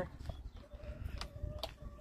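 A hen's faint, drawn-out call, one steady note held for about a second, with a couple of light clicks from the gate post being handled.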